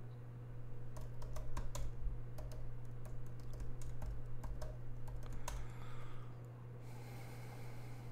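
Typing on a laptop keyboard: a quick, irregular run of key clicks for several seconds, then a softer hiss near the end, over a steady low hum.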